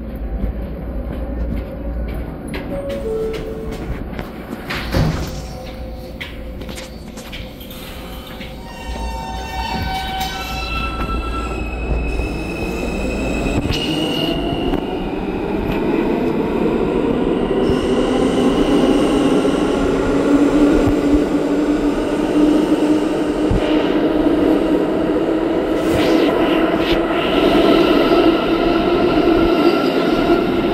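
An R160 subway train pulling out of the station. A sharp knock comes about five seconds in, then its traction motors give a rising series of stepped tones as it starts to move. Its running noise grows louder as the cars speed past.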